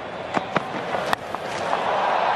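Cricket stadium crowd noise with a few sharp knocks and one loud crack about a second in, the bat striking the ball for a shot that runs away for four. After the crack the crowd noise rises.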